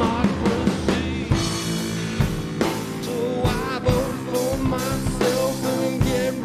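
A rock song with a drum kit beat under a wavering sung or played melody line and guitar accompaniment.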